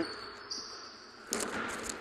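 A basketball bouncing a few times on a hardwood gym floor, short thuds in the second half.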